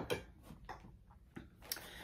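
A few faint, irregular clicks and light knocks from a glass candle jar being picked up and handled.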